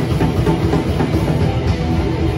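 Live heavy metal band playing loud, with electric guitars and drums.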